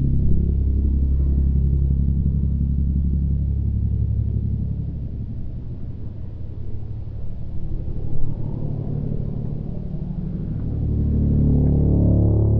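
Low rumble of a Pitts Special S-2S aerobatic biplane's piston engine heard from the ground as it flies aerobatics. The rumble eases a little around the middle and swells again shortly before the end.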